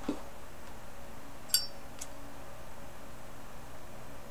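Metal Zippo lighter: a sharp metallic clink with a short ringing tone, then a second click about half a second later.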